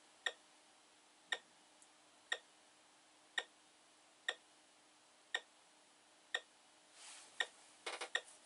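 Short, sharp ticks at an even pace of about one a second over a faint steady hum, with a brief rustle and a few quick clicks near the end.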